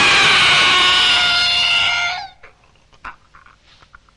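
A woman's long, high-pitched scream lasting about two seconds, dropping slightly in pitch just before it breaks off. Faint scuffling and breathing noises follow.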